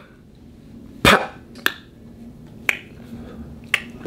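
Four sharp finger snaps, spaced roughly a second apart, the first the loudest.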